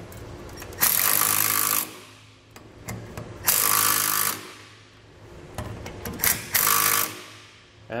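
Compact cordless impact driver with a three-quarter-inch socket hammering nuts down onto a safety-chain U-bolt loop, in short runs: about a second near the start, a shorter run midway, and two quick blips near the end as the nut is snugged flush.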